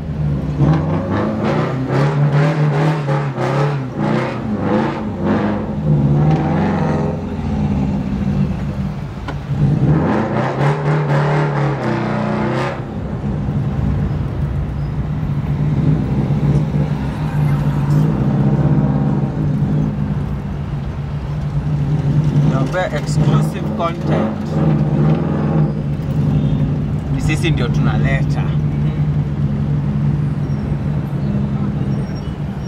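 Rally car engine running steadily at low revs, heard from inside the caged cabin while driving slowly in traffic, with voices over it at times.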